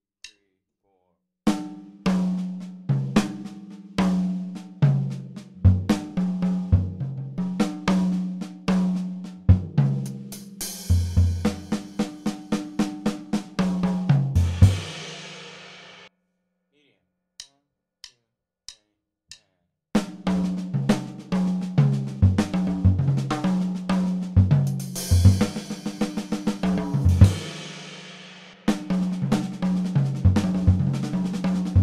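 Jazz drum kit playing a fill slowly at 46 BPM. It is single strokes led by the left hand, mostly inverted paradiddles, moving between snare, toms and bass drum. It ends in a cymbal crash that rings out and dies away about 16 seconds in. After a few faint clicks, the same fill starts again much faster, at 132 BPM, about 20 seconds in.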